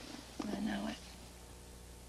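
A short murmured vocal sound, about half a second long, over a steady low hum.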